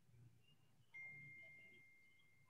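A single faint, high electronic ding, like a computer or phone notification chime, sounding about a second in and fading away over the following second.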